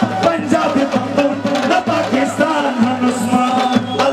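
Live Shina folk song: a male singer with a band, a melody over a steady drum rhythm.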